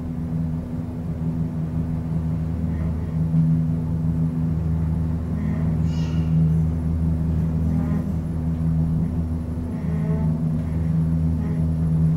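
Inside the car of a 2012 KONE MonoSpace machine-room-less traction elevator travelling upward: a steady low hum of the gearless drive and the moving car. A faint brief whine rises about six seconds in.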